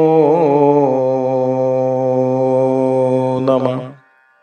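A man chanting a Sanskrit prayer verse, drawing out the last syllable of a line as one long held note. It wavers briefly near the start, holds steady, and breaks off just before the end.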